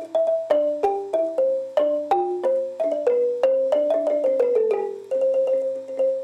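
Xylophone-like mallet instrument playing a Khmer melody, about three notes a second, mostly two notes struck together that ring briefly and fade. About four and a half seconds in it breaks into a quick falling run, then a fast repeated note.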